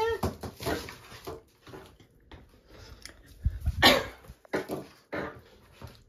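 Household items knocking and clattering as a kitchen drawer is emptied and reorganised, with a louder clatter about four seconds in. A brief rising whine comes right at the start.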